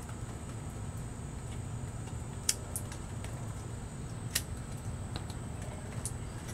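Hand pruning shears snipping through a nectarine scion stick: two sharp clicks about two seconds apart, with a few fainter clicks between, over a steady low background.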